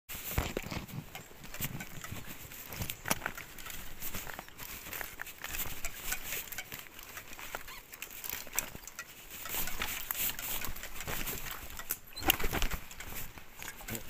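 ICE recumbent trike rolling over a rough dirt forest track: the tyres crunch over dirt, sticks and stones with irregular clicks and rattles from the trike, and a louder jolt comes near the end.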